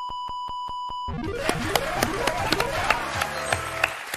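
Game-show sound effects: a steady electronic beep with rapid, evenly spaced ticks, about seven a second, as the correct word is confirmed on the board. About a second in it gives way to a music jingle with drums, over studio applause.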